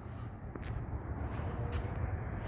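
Steady low outdoor background rumble with two faint footsteps on a driveway, one about half a second in and one near the end.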